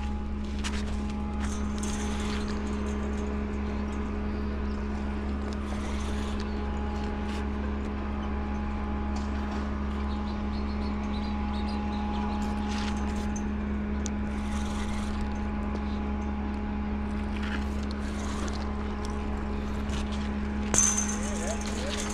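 Steady low hum with a constant droning tone, the running sound of the dam's machinery and water. A sharp click sounds near the end.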